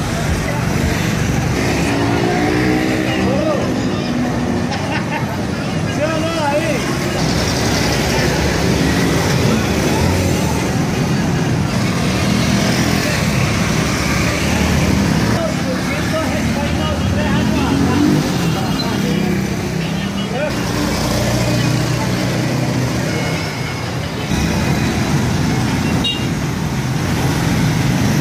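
Many motorcycle engines running as a slow procession of motorbikes passes by, with people's voices mixed in.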